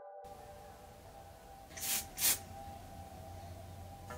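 Two short hisses from an aerosol hairspray can, each about a quarter of a second, close together about halfway through, over soft background music.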